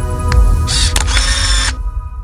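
A logo-sting sound effect: sustained music tones over a low rumble, with a short mechanical clicking, hissing burst of about a second in the middle. The music then fades away.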